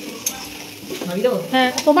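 Flat metal spatula stirring and scraping a dry, crumbly pitha filling around a metal wok, with a single click early on. A voice comes in about a second in.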